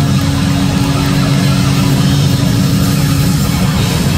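Live hard rock band playing loud: a dense, sustained wall of distorted bass and guitar with drums, heavy in the low end.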